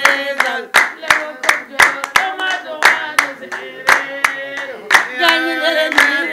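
Women singing a Wolof praise song together to steady hand clapping, about three claps a second. The voices grow fuller about five seconds in.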